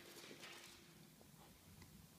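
A kitten's paws scampering on a hardwood floor, a quick flurry of faint patters in the first second as it chases a laser dot.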